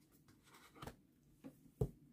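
Tarot card being laid down onto a spread of cards on a table: a few faint, short card rustles and taps, the loudest near the end.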